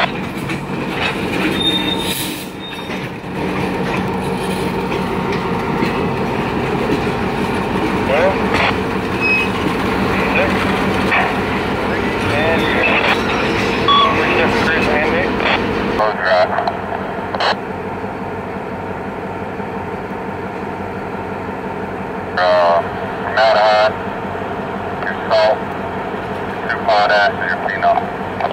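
EMD GP38-2 diesel locomotive, with its 16-cylinder two-stroke engine, running steadily as it rolls by with a string of tank cars. About halfway through the sound turns abruptly duller, losing its highs.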